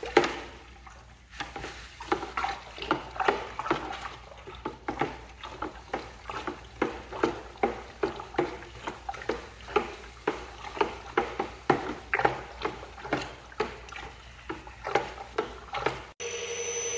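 A pail of hot water being stirred by hand in quick, even sloshing strokes, about two to three a second, while granular bentonite is poured in slowly. A single knock right at the start is the loudest sound.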